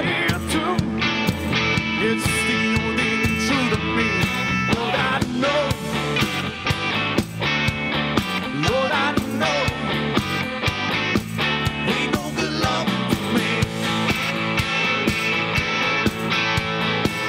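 Southern rock band playing live: electric guitars, bass and drums on a steady beat, with bending guitar lines and no singing.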